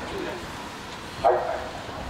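A single short, loud call about a second and a quarter in, over steady background noise.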